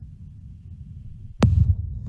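Low rumbling hum of an open microphone on a video-call audio feed that has been cutting out. About one and a half seconds in there is a sharp click, then the rumble grows louder.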